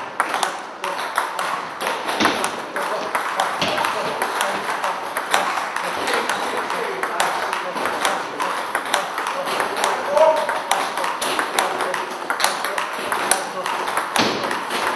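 Table tennis balls struck back and forth in a rally: a steady run of sharp clicks off paddles and table, several a second, ringing in a large hall.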